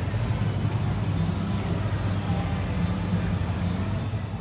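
Steady low hum and background din of an indoor shopping centre, with a few faint ticks.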